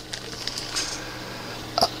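A steady low hum in a quiet room, with the man's voice starting again just before the end.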